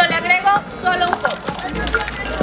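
A high-pitched voice in the first second, with a few light clicks and knocks.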